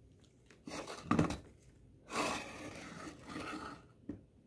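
Glazed ceramic birdhouse handled and then turned around on a wooden box lid: a brief knock about a second in, then a rough scraping rub lasting nearly two seconds.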